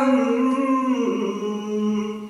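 A man's unaccompanied voice holding one long sung note of a Kashmiri Sufi manqabat, stepping down slightly in pitch about a second in.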